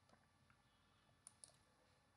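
Near silence: faint room tone with two or three faint, short clicks about one and a half seconds in.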